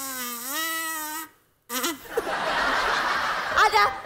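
A small toy trumpet blown in one held note that steps up in pitch and then stops about a second in, an attempt to play back a song's tune. After a short pause, people laugh.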